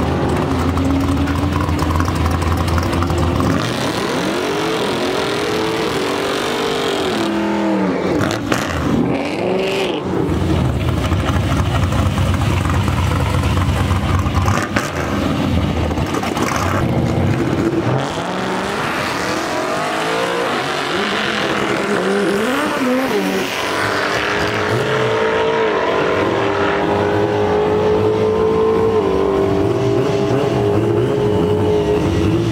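Chevy S-10 drag truck's carbureted engine revving hard in a burnout, the revs swinging up and down several times. Near the end it settles into a steadier, slowly climbing note.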